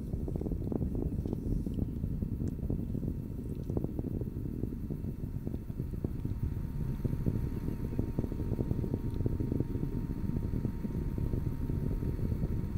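Steady low rumble with scattered crackle, from the Falcon 9 first stage's Merlin engines burning late in the ascent; a faint steady tone joins about halfway through.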